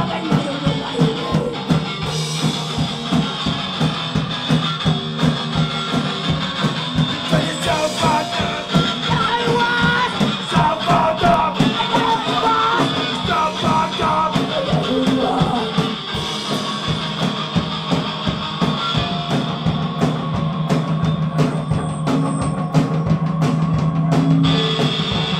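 Hardcore punk band playing live: dense, steady drumming with bass and guitar, and vocals that come in mostly through the middle of the stretch.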